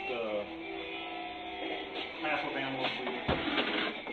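Background music under brief speech, with one short low thump a little after three seconds in.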